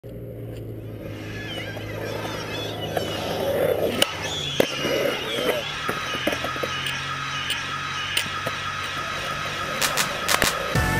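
Skateboard sounds on concrete: several sharp board clacks over a steady low hum, with faint voices.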